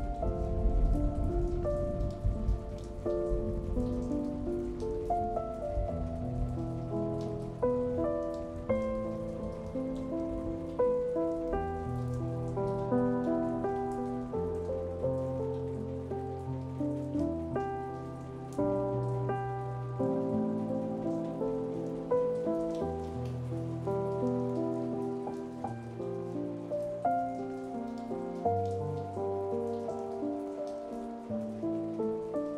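Slow, calm solo piano music, single melody notes over sustained bass notes, with a steady patter of rain falling behind it. A low rumble at the start fades away within the first couple of seconds.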